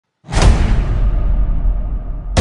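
Intro title sound effect: one sudden hit about a quarter second in, its high hiss fading slowly over the next second and a half, above a steady deep low hum.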